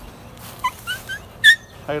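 A dog whining in several short, high, rising yips, the loudest about a second and a half in.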